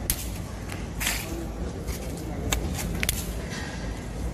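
Twist-grip gear shifter on a 7-speed Rockrider ST 30 mountain bike being turned by hand, giving a handful of sharp, irregular clicks as it steps through the gears.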